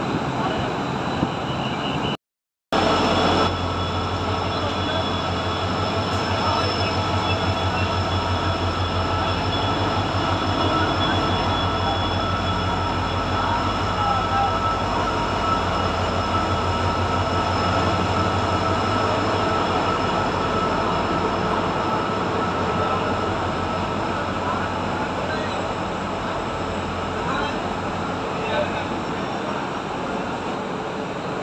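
Passenger train rolling slowly along the platform, locomotive and coaches passing close by with a steady rumble and a low, rapid engine pulse that eases about two-thirds of the way through. The sound drops out briefly a couple of seconds in.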